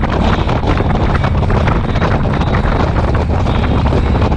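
Wind buffeting the microphone of a motorcycle-mounted camera at road speed, over the motorcycle's engine running steadily underneath.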